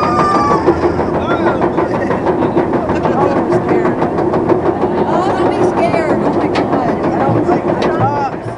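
Roller coaster train climbing its chain lift hill: a rapid, even clatter of clicks over a steady drone from the lift chain. Riders laugh and give a short high squeal just after the start.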